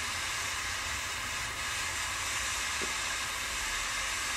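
Triple-jet butane cigar lighter burning with a steady hiss.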